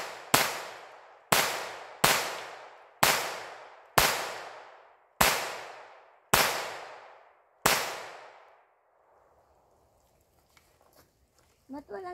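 Taurus TX22 .22 LR semi-automatic pistol firing eight single shots at an uneven pace of about one a second, each shot trailing off in a short echo. The shooting stops about eight seconds in.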